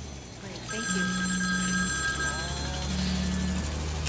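Mobile phone ringing in repeated pulses about a second long with short gaps between them, steady electronic tones sounding over the middle pulse.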